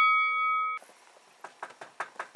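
A bell-like ding sound effect rings with several clear overtones and cuts off abruptly under a second in. After it comes a faint background with a few soft taps.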